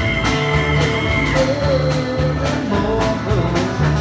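Live country string band playing: a double bass walking a steady low line under a strummed acoustic guitar, with long held melody notes that bend slightly in pitch laid over them.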